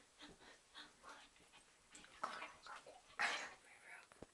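Stifled, breathy laughter and breathing close to the camera microphone, in short puffs, the loudest a little after three seconds in.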